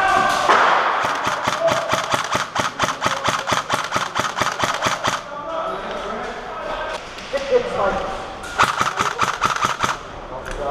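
Airsoft rifle firing a long rapid string of shots, several a second, for about five seconds, then another short string near the end.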